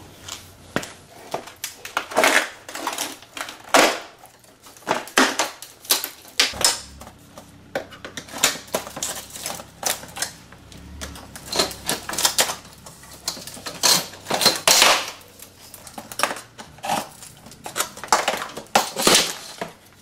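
Irregular clicks, knocks and rattles of a thin aluminium TV bezel frame being worked loose and lifted off an LCD panel assembly by hand.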